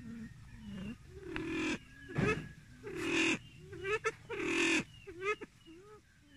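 Silver pheasant calling: a run of about eight short calls that bend in pitch, the loudest ones in the middle harsh and hissy.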